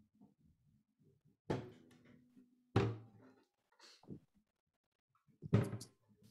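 Acoustic guitar being handled before playing: three sharp knocks, about a second in, near the middle and near the end, each followed by a brief ringing of the strings. Heard through a video-call connection.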